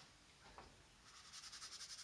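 Faint, quick scrubbing strokes on textured watercolour paper, about ten a second for about a second, as a paint run is lifted off the painting.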